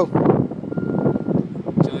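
Wind buffeting a phone microphone, with a thin steady high tone for about a second in the middle.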